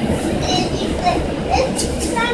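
Inside a moving city transit bus: a steady low rumble of engine and road noise, with a short, sharp high-pitched sound near the end.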